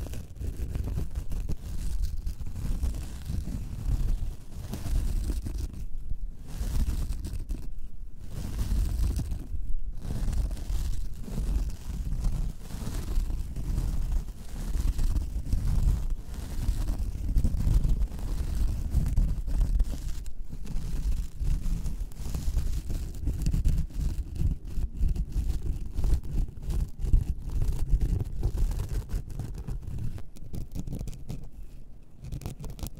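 Fingernails scratching fast and without letup on a star-shaped object, with a few brief pauses between about six and ten seconds in.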